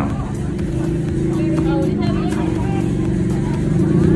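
Busy street sound: a steady low drone under faint, indistinct voices of people around.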